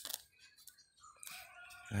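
A rooster crowing faintly, one drawn-out call in the second half, after a brief click at the start.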